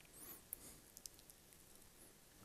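Near silence: faint room tone, with one faint click about half a second in.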